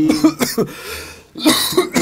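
A man coughing: rough coughs, the sharpest burst about one and a half seconds in.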